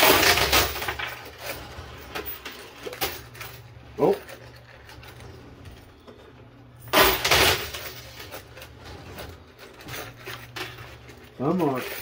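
Quarters dropped into a coin pusher machine, clattering onto the coins on its metal playfield in two bursts: one at the start and another about seven seconds in, over a steady low hum.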